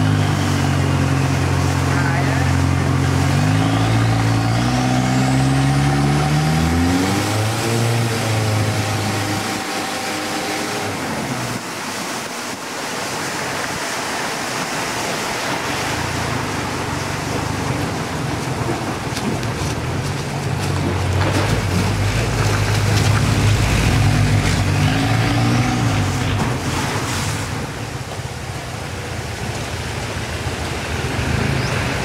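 Boat engine running on the water, a steady low hum over a wash of water and wind noise. Its pitch rises about a quarter of the way in and then fades away. An engine hum comes back in the second half and rises again a few seconds before the end.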